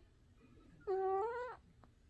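A tabby cat's single short meow, a little under a second in, rising slightly in pitch at its end.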